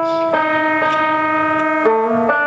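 Guitar playing long, bell-like held notes that ring on with little fading. The notes change about a third of a second in and again near the end.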